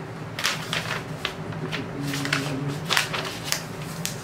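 Paper record sleeve rustling and crinkling as a vinyl LP is handled and slid out, in about half a dozen short, sharp rustles.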